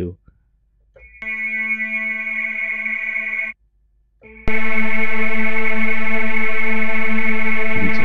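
MSoundFactory software synthesizer sounding one sustained note twice at the same pitch. The first note is held about two seconds. After a short gap the second is much louder and brighter, with a denser, detuned texture, and held about four seconds.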